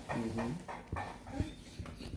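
Dog giving a short, low whine just after the start, followed by a few faint clicks.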